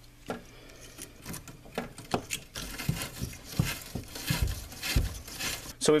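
Copper pipe end being scrubbed clean with an abrasive cleaning tool: scattered scrapes and clicks, then about three seconds of quick, dense scrubbing strokes. This is surface prep so the press fitting's O-ring seals without leaking. A sharp knock comes near the end.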